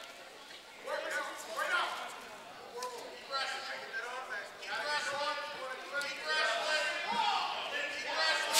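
Several voices calling out in a large gym hall, heard at a distance and coming in short stretches, with a few faint knocks.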